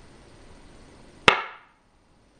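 A black go stone placed on a wooden go board: one sharp click a little past the middle, with a short ringing tail.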